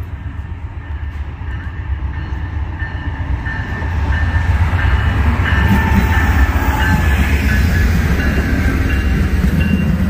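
Amtrak GE Genesis P42DC diesel locomotive hauling a passenger train past at close range. The rumble builds and is loudest from about four seconds in as the locomotive goes by, then carries on as the passenger cars roll past.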